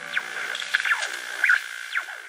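Electronic glitch and static sound effect: a hissing buzz with quick warbling chirps and crackles, loudest about one and a half seconds in.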